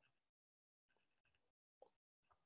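Near silence: faint room tone broken up by a call's noise gating, with one very faint brief sound near the end.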